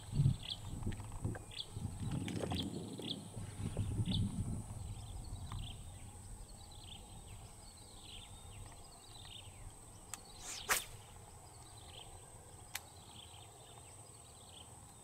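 Rustling and scuffing of footsteps and handling gear in wet grass during the first few seconds, under a small bird chirping repeatedly in short falling notes. About ten and a half seconds in, a quick swish of a fishing rod being cast.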